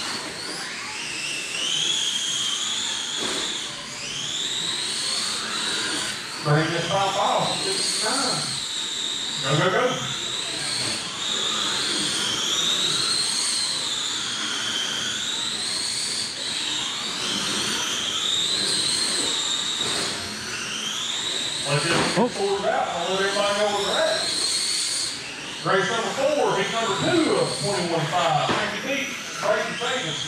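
Brushless electric motors and drivetrains of 1/10-scale 21.5 RC late model cars racing, a high-pitched whine that rises and falls every couple of seconds as the cars speed up on the straights and lift for the corners. Voices come and go over it.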